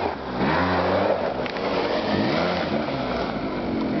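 Quad bike (ATV) engine running under throttle, its pitch rising and falling twice as it is revved up and eased off, over a steady rush of noise.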